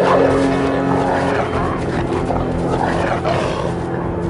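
Two dogs fighting, snarling and growling in rough bursts, over music with steady held low notes.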